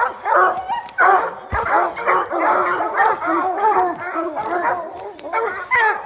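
Hunting hounds barking and yipping steadily, many short high-pitched calls overlapping without a break.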